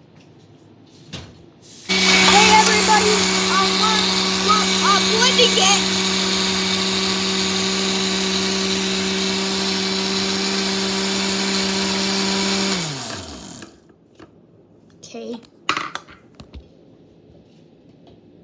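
Oster glass-jar blender running on a berry and ice-cream shake: it starts about two seconds in, runs steadily for around ten seconds, then is switched off and winds down with a falling hum.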